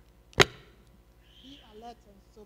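A single sharp knock about half a second in: handling noise at the pulpit. Faint voice near the end.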